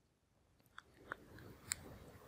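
Near silence broken by a few faint, short clicks in the second half.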